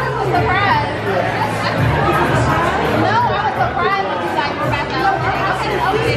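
Indistinct conversation and chatter of several people in a busy room, over background music with a steady repeating bass line.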